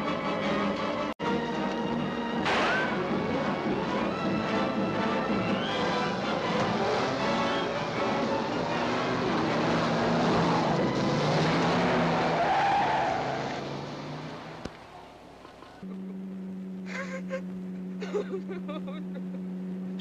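Dramatic orchestral film score that fades out about fifteen seconds in. A steady low car-engine hum then starts abruptly.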